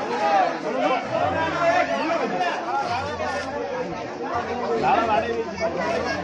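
Crowd of many people talking at once: a dense babble of overlapping voices.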